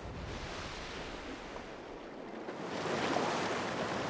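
Ocean water washing steadily, swelling louder about three seconds in.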